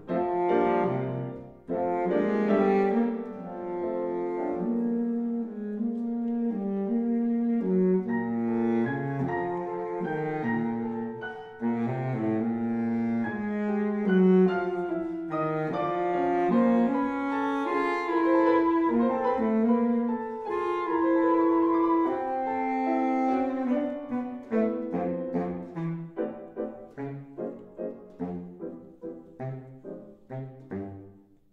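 Baritone saxophone and piano playing a classical sonata, the saxophone carrying a sustained melodic line over the piano. Near the end the music turns to a run of short detached notes, about two a second, growing quieter.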